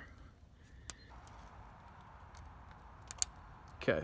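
A few light metallic clicks, one about a second in and a quick pair near the end, over a faint hiss: a small steel locking pin is being worked into the alignment hole of a Honda K24 camshaft sprocket until it locks in.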